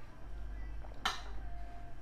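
A goblet set down on a glass tabletop about a second in: one sharp clink followed by a brief ringing tone.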